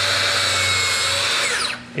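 Makita plunge track saw running at full speed with a steady high whine, making a shallow scoring pass a couple of millimetres deep. Near the end the trigger is released and the motor winds down, its pitch falling.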